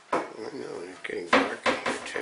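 A few sharp clinks of cups and dishes being handled on a kitchen counter, most of them in the second half, with a voice under them in the first half.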